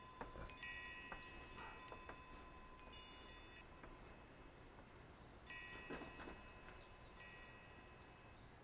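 Faint chalk writing on a blackboard: light taps and scratches as a line and short marks are drawn, with four or five high ringing tones, each lasting about a second.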